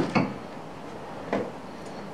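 Metal hand tools clinking as they are handled in a fabric tool bag: a short clatter at the start and one light click a little over a second in.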